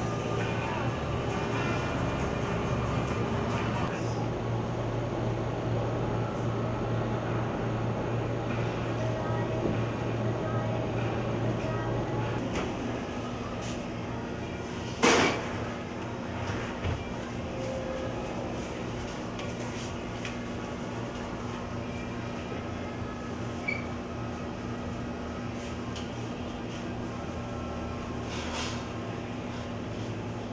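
Store ambience with background music and voices. About halfway through it gives way to a Hobart deli meat slicer's electric motor running with a steady hum, with one sharp clank a couple of seconds after the change.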